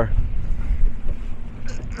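Low, steady rumble of wind buffeting the microphone aboard a yacht on open water.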